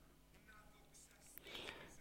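Near silence: room tone, with a faint breath from the man at the microphone near the end.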